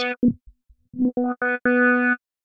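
Short repeated notes on one pitch from a Spectrasonics Omnisphere wavetable synth patch, played through a 24 dB low-pass filter ('LPF Juicy 24db'). As the filter's cutoff offset is dragged down and back up, the notes turn dull and nearly fade out about half a second in, then brighten again toward the end.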